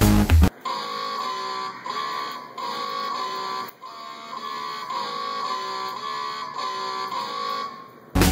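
Loud background music cuts off about half a second in; then a home-built robot guitar plays a short riff of plucked guitar-like notes over and over, quieter and thinner than the music.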